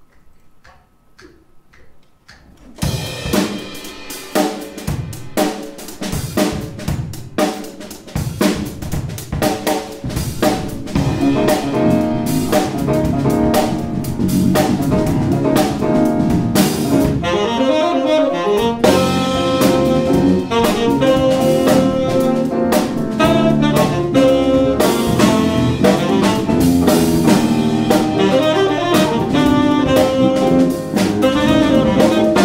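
A few soft, evenly spaced ticks, then about three seconds in a jazz quartet comes in: drum kit with snare, bass drum and cymbals, saxophone, keyboard and electric bass. The band builds in loudness over the following ten seconds and then plays on steadily.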